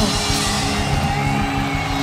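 Live band music playing over the PA: a steady low beat under held chords.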